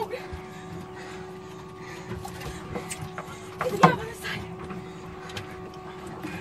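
A steady mechanical hum from the boat, with one short loud human cry about four seconds in.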